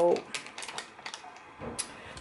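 Plastic lid and foil seal of a yogurt tub being handled: a few small clicks and crackles in the first second, then a soft knock and a sharp click just before the end.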